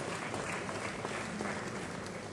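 Audience applauding steadily, a dense patter of many people clapping.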